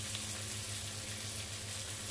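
Vegetables and spices frying in oil in a steel kadhai: a steady, even sizzle with a low hum underneath.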